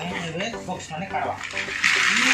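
Plastic toy building blocks poured from their bag, a sudden loud clattering rush that starts near the end.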